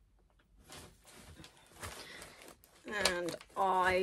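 Soft rustling and handling noises, then two short wordless vocal sounds from a woman near the end, the first falling in pitch and the second held, louder than the rustling.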